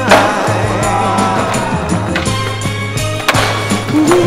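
Skateboard clacks on concrete, a sharp one just at the start and another about three seconds in, with a song playing over them.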